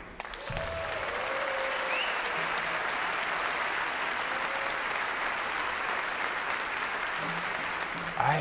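Concert audience applauding steadily, starting just after the band's music stops, with a few faint whistles and calls from the crowd.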